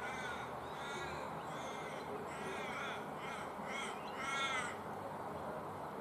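A crow cawing outdoors: a run of about seven harsh, arched calls, the last one the longest and loudest.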